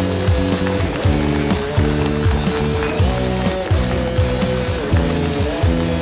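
A rock band playing an instrumental passage on drum kit and electric guitars. A quick, even cymbal beat and a kick drum about twice a second run under long held guitar notes.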